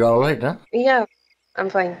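A person speaking in three short phrases, over faint high-pitched chirps repeating in the background, typical of crickets.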